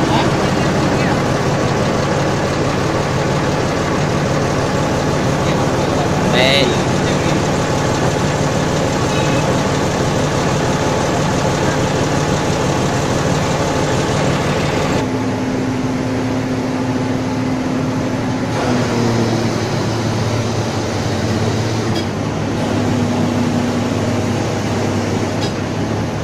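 Engine of a truck-mounted crane running steadily while it hoists a steel tower section, its note shifting in pitch a few times in the second half.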